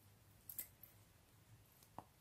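Near silence with a few faint clicks, the clearest about half a second in and another at the very end: knitting needles tapping as stitches are worked.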